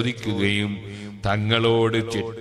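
A man's voice chanting in long, held melodic phrases, in the recitation style of an Islamic religious talk: two drawn-out notes, the second starting a little past a second in.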